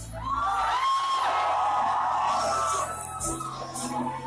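Electronic dance music from a DJ mix played loud on a club sound system, with the kick drum and bass dropping out soon after the start and returning about three seconds in. Crowd voices shout and whoop over the break.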